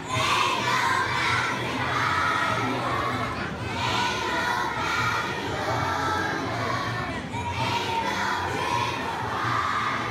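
A large group of kindergarten children singing loudly together, half shouting the words, in held notes about a second long.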